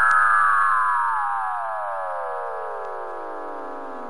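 Synthesized flying-saucer sound effect: an electronic tone that glides steadily down in pitch and slowly fades, with a faint click just after the start.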